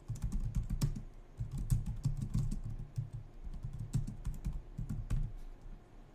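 Typing on a computer keyboard: a quick run of keystrokes as a short phrase is typed, stopping about five seconds in.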